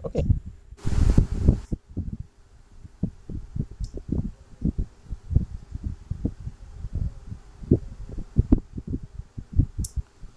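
Irregular dull low thumps, several a second, with a short burst of rustling noise about a second in.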